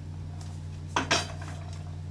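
Metal clinks and rattles from a wheeled IV pole with an infusion pump being pushed along, two sharp clinks about a second in, over a steady low hum.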